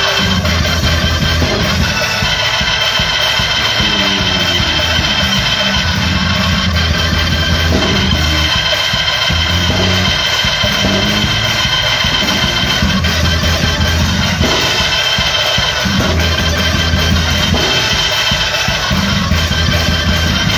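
Live church band playing an instrumental piece: a drum kit keeping a steady beat under deep repeating bass notes and sustained keyboard tones, with no singing.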